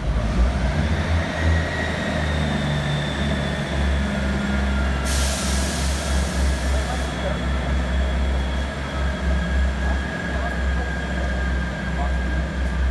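Class 158 diesel multiple unit standing at a platform, its underfloor diesel engines idling with a deep, steady throb. A loud hiss of released air comes about five seconds in and lasts about two seconds.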